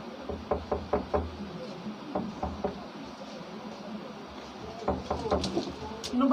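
Plastic clicks and knocks with low thuds as a ring light and its phone-holder bracket are handled and fitted onto a tripod stand, coming in three short runs of clicking.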